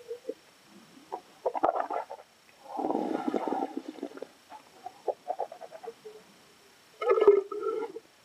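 A person sipping red wine and swishing and gurgling it through the mouth to taste it, with a dense rough burst of gurgling a few seconds in; near the end another gurgling burst as the wine is spat into a metal cup.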